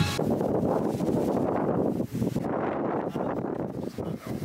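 Wind rushing over the microphone on a moving motor yacht: a rough, steady noise with a brief drop about two seconds in.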